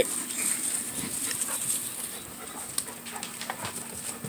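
Puppies moving about close by, panting and scuffling, with scattered light clicks and scuffs.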